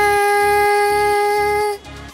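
A young woman's singing voice holding one long, steady note over a karaoke backing track, sung into a wired earphone microphone. The note cuts off near the end while the backing music carries on.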